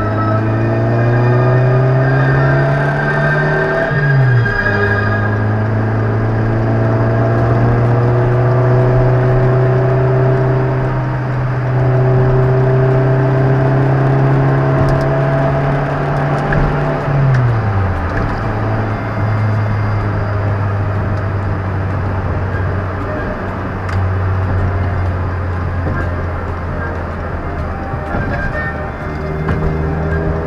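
A vehicle engine running loudly. Its pitch climbs slowly, drops sharply about four seconds in, holds fairly steady, then drops sharply again around seventeen seconds in.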